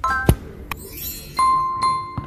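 Subscribe-button sound effect: a couple of sharp mouse clicks, then a notification bell dinging twice in quick succession from about halfway through, with a ringing decay.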